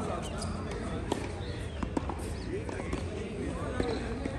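Tennis ball knocks: a few sharp hits of the ball on strings and on the hard court, spread through the seconds, with people's voices in the background.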